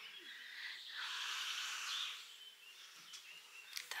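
Faint garden ambience: a soft hiss with distant birds chirping, swelling for a second or so and then fading.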